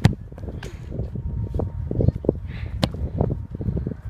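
A football struck hard off artificial turf, a single sharp thud right at the start, followed by a steady low rumble; about three seconds in there is another sharp knock.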